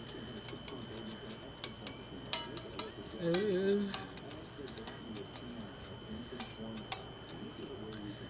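Metal tuning pegs on a wire soap cutter being turned to tighten the cutting wires: a run of sharp, irregular clicks and ticks of metal on metal.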